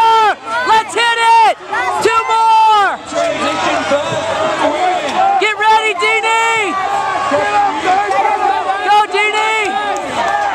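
Voices shouting encouragement in loud, high-pitched yelled calls over a steady crowd hubbub. The shouts come in clusters, with a lull of a couple of seconds just after the start and another in the second half.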